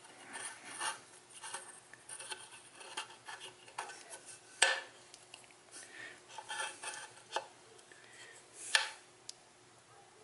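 Light metallic clinks, taps and rubbing from an aluminium engine side cover and hand tools being handled, with two sharper clicks, one about halfway through and one near the end.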